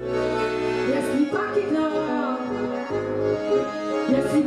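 Live band music playing, with held chords and a melody line over them.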